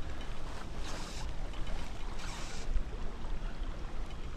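Creek water and wind rumbling on the microphone, with two short hisses about a second and two and a half seconds in.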